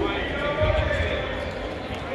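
Several people's voices calling out indistinctly, echoing in a large gym, over a low rumble of movement.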